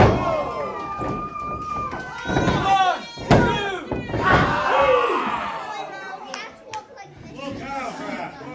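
Wrestling ring impacts: a sharp thud on the ring canvas right at the start and another about three seconds in, as a wrestler drops onto his opponent. Shouts and yells come between them, with a short burst of crowd voices just after the second impact.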